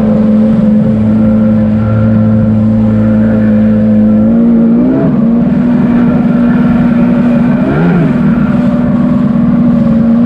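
Sea-Doo jet ski running steadily at speed over choppy water, the engine note mixed with rushing water. Its pitch steps up slightly a little before halfway and wavers briefly about eight seconds in.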